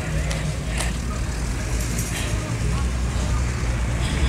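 A vehicle engine running with a low, steady rumble on the street, with voices in the background.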